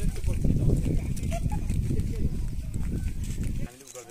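Wind buffeting the microphone: a loud, low rumbling noise that cuts off suddenly near the end.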